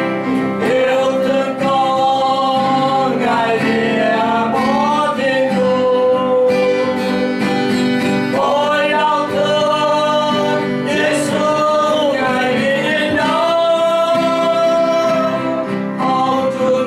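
A man singing a Vietnamese song with an acoustic guitar accompaniment, his melody in long held notes that slide from one pitch to the next.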